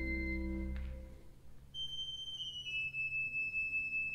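Pipe organ holding a full chord with deep pedal notes, released about a second in, then a thin, high line of held notes stepping slowly downward.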